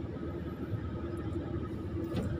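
Excavator's diesel engine running steadily, heard from inside the operator's cab: an even low rumble with a faint constant hum over it.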